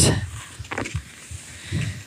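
Skis gliding over packed snow, a faint irregular scraping with low rumbles.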